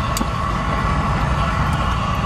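Steady machine hum with a low rumble and a constant mid-pitched tone underneath.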